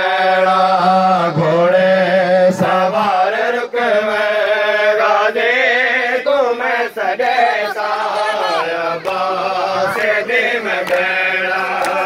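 A noha, a Shia mourning lament, recited by a male voice through a microphone and loudspeaker, with other men chanting along in long, held, wavering melodic lines. Sharp slaps cut through roughly once a second.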